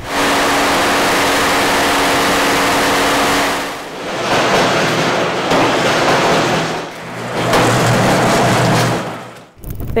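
Bread-oven burner running loudly, a steady rushing roar with a low hum in it, followed by two more stretches of loud rushing noise after brief dips about three and a half seconds and seven seconds in.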